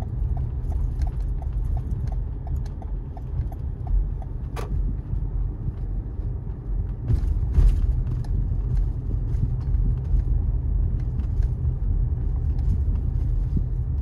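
Car cabin noise while driving, a steady low rumble of road and engine, with the turn-signal indicator ticking about three times a second until it stops about three seconds in. A single sharp click comes about four and a half seconds in, and a brief louder rush about seven seconds in.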